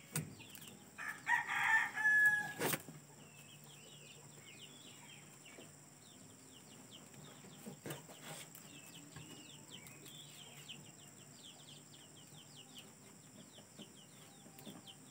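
A rooster crows once, loudly, starting about a second in, followed by many short faint bird chirps, with a few sharp clicks along the way.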